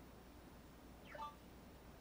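Near silence: room tone, with one brief, faint falling squeak a little past a second in.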